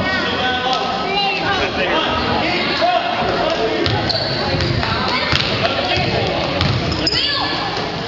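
Basketball bouncing on a hardwood gym floor as players dribble and run, with low thuds about halfway through and a few sneaker squeaks near the end, over the chatter and shouts of spectators in a large gym.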